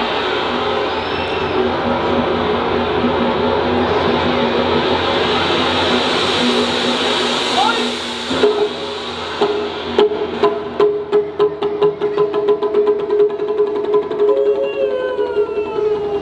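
Live stage music: a rushing hiss over steady low tones for about eight seconds, then a long held note over drum strikes that come faster and faster, with falling vocal glides near the end.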